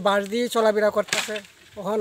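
A man speaking in Bengali, in short phrases with a brief pause.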